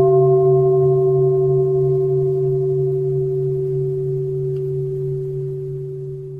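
A Buddhist bowl bell, struck just before, rings on as one long tone over a low hum and fades slowly. It marks the start of the sutra recitation.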